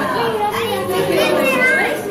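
Several children's voices talking and calling out over one another, a busy chatter of young voices.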